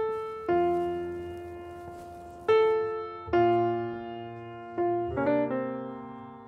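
Slow background piano music: single notes and chords struck every second or so, each ringing out and fading.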